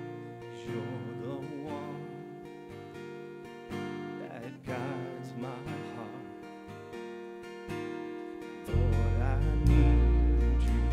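Live worship song: a strummed acoustic guitar with a man singing over it. A loud deep bass comes in about nine seconds in.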